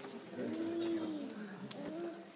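An infant's soft coo: one smooth call that rises and falls in pitch, lasting about a second, over faint background murmur.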